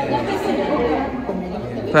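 Indistinct chatter of several people talking at once, with no single clear voice.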